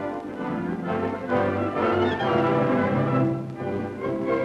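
Orchestral film score led by brass, playing held chords.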